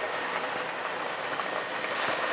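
Pot of spaghetti boiling hard on a gas burner: a steady bubbling hiss of rolling boiling water.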